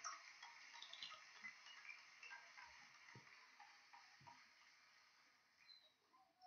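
Near silence, with faint scattered ticks and light clicks of trading cards being flipped through in gloved hands, fading away toward the end.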